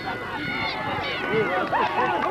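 Sideline spectators shouting and talking over one another, many voices overlapping with no single clear speaker.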